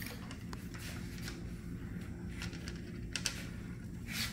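Faint handling noise from a Christmas light strand being worked onto a strap at the top of a column: the wire and plastic bulb sockets rustle and give a few light clicks, spread out, over a steady low hum.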